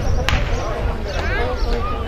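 Starter's pistol fired once to start a sprint race, a single sharp crack with a short ring-out, followed by voices shouting.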